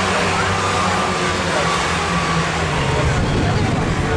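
Steady drone of Ministox stock car engines running, its note dropping a little about three seconds in, with spectators' voices over it.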